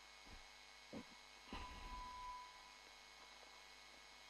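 Near silence: faint steady room hum with a few soft, faint knocks in the first half.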